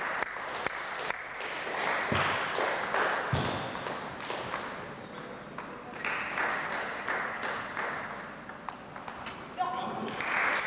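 Murmur of spectators echoing in a sports hall, with scattered sharp clicks of a table tennis ball.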